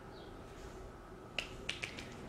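A few light, sharp clicks from a woman's hands with long acrylic nails, about four in quick succession starting halfway through, over quiet room tone.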